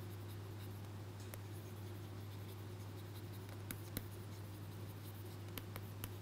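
Faint scratches and light taps of a stylus writing on a pen tablet, with a few sharp ticks, over a steady low hum.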